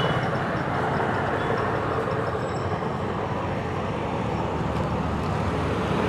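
Steady low rumble of vehicle engines in street traffic.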